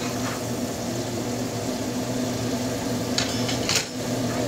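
A steady mechanical hum with a hiss over it, like a fan running, and two brief clatters near the end.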